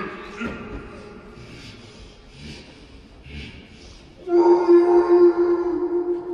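Theatrical sound effect of a rhinoceros: short breathy puffs, then a loud, drawn-out roar that starts about four seconds in and holds one steady pitch.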